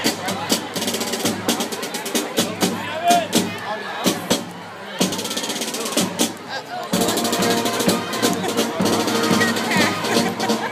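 Parade band music with drum beats, snare and bass drum, over spectators' chatter; the band's held tones come in louder about seven seconds in.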